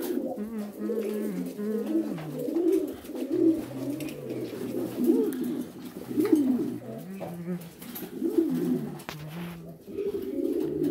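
Domestic pigeons cooing, a run of repeated coos that swell and fade one after another.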